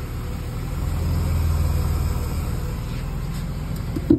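A Mercedes-Benz engine idling with a steady low hum that swells louder for a second or so, about a second in.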